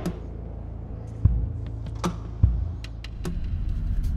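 A steady low background rumble with a few scattered knocks and clicks, the loudest about a second in and again past the middle.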